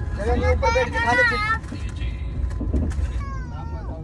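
A small child's high-pitched voice calling out twice, the second call sliding down in pitch, over the low steady rumble of a moving passenger train.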